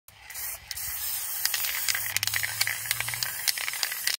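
Aerosol spray paint can spraying a steady hiss of paint, with a brief break about half a second in.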